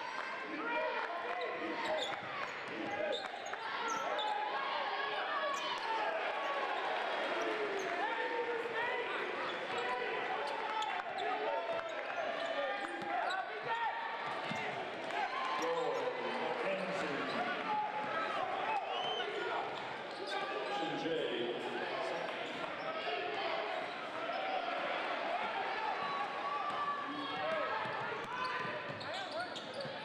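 Live sound of an indoor basketball game: the overlapping, unintelligible voices of the crowd and players in the gym, with a basketball bouncing on the hardwood court.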